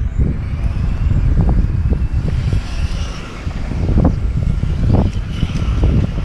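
Low, buffeting wind noise on the camera microphone, with footsteps on a concrete path landing as short thuds every second or so.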